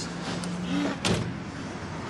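Someone climbing into a car's back seat through the open rear door, with one sharp knock about a second in over a steady low hum.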